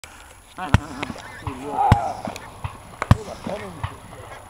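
A skein of wild geese calling as it flies over, mixed with a man laughing. Several sharp knocks punctuate it, the three loudest about a second, two seconds and three seconds in.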